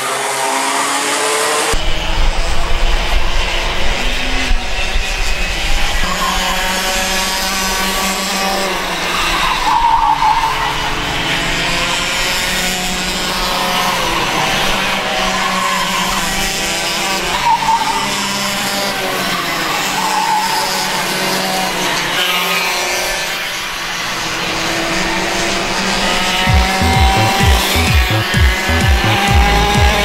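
Small two-stroke kart engines racing past, several at once, their pitch rising and falling as the karts accelerate and lift through the corners. Music with a steady beat comes in near the end.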